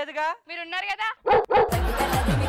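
Short, high, dog-like barking yelps, then about a second and a quarter in a loud hit sets off lively music with repeated falling bass swoops.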